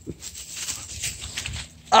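Faint rustling and crunching in dry leaf litter and brush, made up of small scattered ticks.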